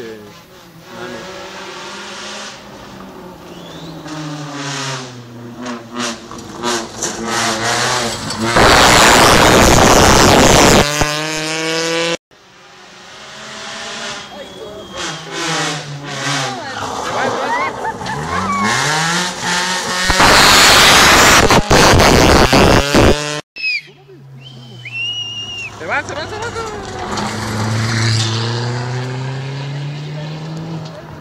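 Rally cars on a gravel stage coming through one after another, their engines revving up again and again as they climb through the gears. Two cars pass close by at full volume, about 9 and 21 seconds in, each pass carrying a heavy rush of tyre and gravel noise. A third car's engine builds toward the end.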